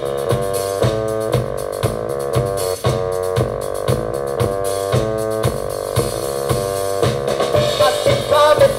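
Live technopop band playing an instrumental passage: short, repeated synthesizer chord stabs over a steady drum-kit beat, with no singing.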